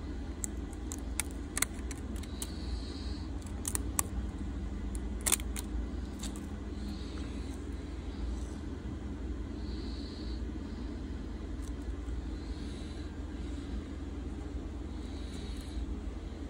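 Scattered light clicks and taps from a smartphone's glass back panel and phone parts being handled, most of them in the first six seconds, over a steady low hum.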